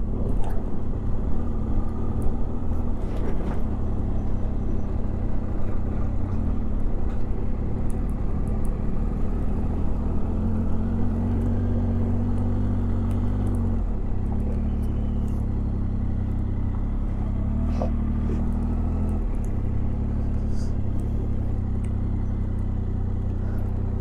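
Triumph Tiger motorcycle's three-cylinder engine running steadily at low revs while the bike is ridden slowly, its note rising slightly a couple of times.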